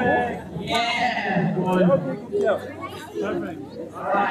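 Several people talking over one another close by: crowd chatter.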